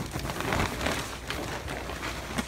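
Handling noise: a phone or camera microphone rubbing and knocking against clothing and a hand as it is moved, a dense crackling rustle with scattered clicks.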